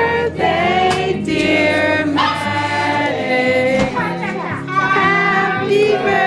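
A group of voices singing together, with held and gliding notes over a steady low accompaniment.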